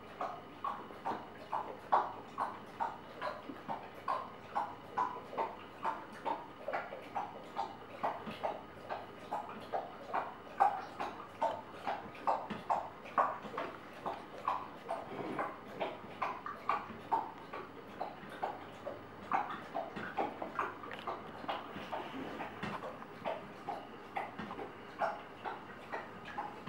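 Large dog lapping water from a tall bowl: a steady, even run of wet laps, about two to three a second.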